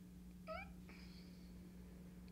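A single brief high-pitched squeak, rising in pitch, about half a second in, followed by a faint click, over a steady low electrical hum; otherwise near silence.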